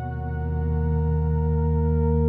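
Korg Prologue synthesizer playing its "New Hope 1" patch: a sustained ambient chord with a low bass note swelling in and growing louder. The low notes carry a fast pulsing wobble.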